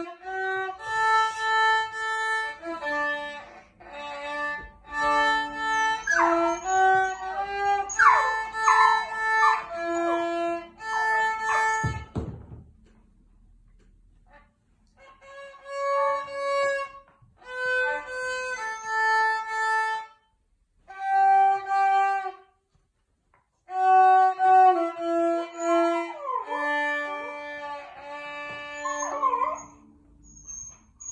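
Violin bowed through a lively tune in short phrases, breaking off for a couple of seconds about twelve seconds in and briefly twice more later on. A dog whines and yips over the playing in sliding, rising and falling cries, a little before the break and again near the end.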